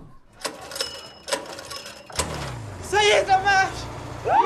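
Several sharp clicks in the first two seconds, with a low falling tone after the last one. Then a short excited vocal cry with wavering pitch near the end.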